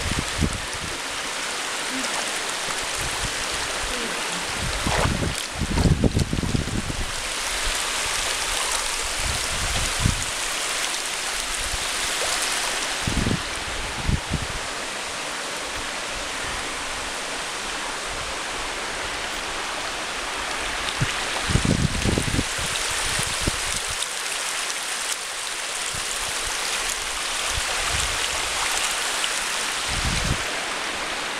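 Water rushing over the rock lip at the top of a waterfall, a steady hiss. A few low thumps break in about five seconds in, near the middle and about three-quarters of the way through.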